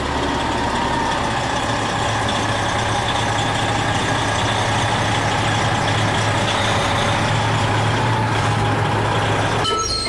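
Diesel engine of a semi truck idling, a steady low hum that breaks off abruptly shortly before the end.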